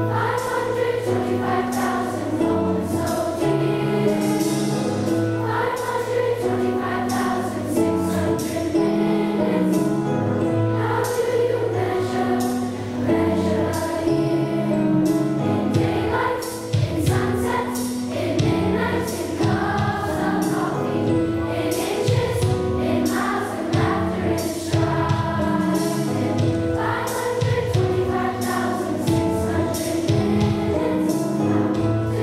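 A large choir of schoolchildren singing together, held notes moving from pitch to pitch through a song.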